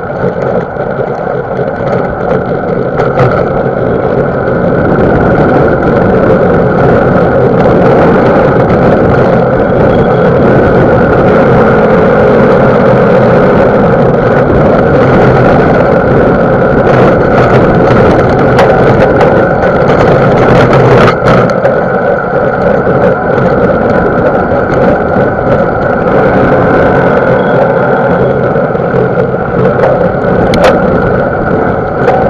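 Riding noise on a mountain bike rider's action camera: a loud steady rush of wind on the microphone and tyres rolling over a dirt trail, growing louder over the first few seconds, with occasional knocks and rattles from the bike over bumps.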